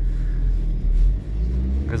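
Toyota 2C four-cylinder diesel engine pulling away from a stop, heard from inside the cabin: a low rumble that rises in pitch about a second in as the revs climb.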